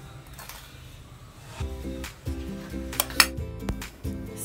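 Background music, with a few sharp clinks of kitchen utensils against stainless steel cookware around three seconds in, the loudest just after three seconds.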